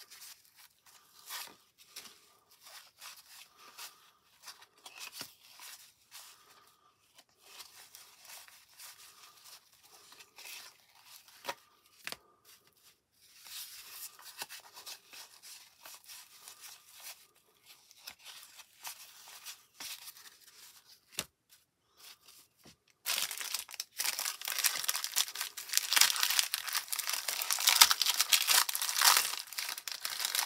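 Stiff cardboard baseball cards rustling and sliding against each other as they are flipped through one by one. About 23 seconds in, a much louder, steady crinkling and tearing starts: the plastic cellophane wrapper of a new cello pack being torn open.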